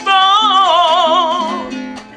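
A man singing a gaita zuliana, holding one long note with a wide vibrato that fades away near the end, over a Venezuelan cuatro strummed in accompaniment.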